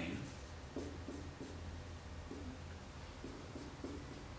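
Marker pen writing on a white board: a string of short, faint strokes as an arrow and letters are drawn.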